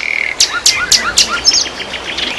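Several small birds chirping together, loud and busy: quick high chirps overlapping with short downward whistles. It is the birdsong sound bed of a TV station logo ident.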